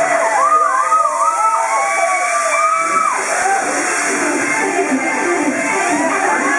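A concert audience screaming and cheering, many high voices rising and falling over one another, with music underneath.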